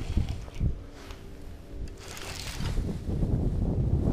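Knocks and rustling as hands work a baitcasting reel and line close to the microphone, then a low wind rumble on the microphone that grows toward the end, with a brief hiss a little past the middle.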